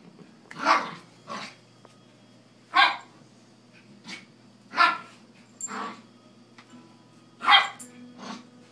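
A dog barking: about seven single barks spaced irregularly, the loudest near the end.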